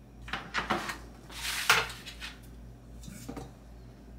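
A spatula scraping and clanking against a stainless steel mixing bowl in a few short bursts; the loudest comes a little before halfway.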